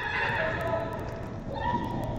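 Young players shouting and calling out across an indoor football pitch, their voices rising and falling in pitch, with a fresh shout near the end.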